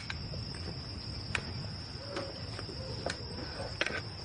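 Crickets trilling steadily as night-time ambience, with a few faint clicks scattered through it.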